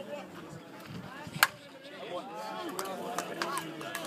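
A softball bat hitting a pitched softball: one sharp, loud crack about a second and a half in. Voices from the players and onlookers follow.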